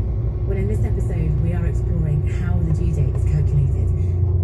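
Steady low rumble of a vehicle's engine and tyres on the road, heard from inside the moving vehicle, with a voice over it.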